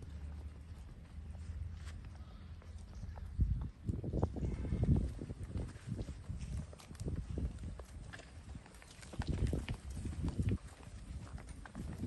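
Hooves of a Holstein Friesian cow and a handler's footsteps thudding and scuffing on sandy dirt, loudest about four seconds in and again around nine to ten seconds.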